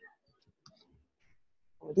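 A few faint computer mouse clicks as a link is clicked; speech starts near the end.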